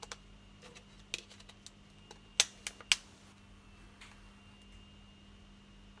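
Sharp plastic clicks from the casing of a Samsung C3510 Genova mobile phone being handled and pressed with the fingers. There are a few scattered clicks, with the two loudest close together a little before the middle.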